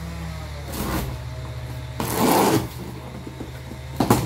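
Packing tape on a cardboard box being slit and pulled along the seam: a brief rustling scrape just before a second in, then a louder, longer tearing scrape about two seconds in, over a steady low hum.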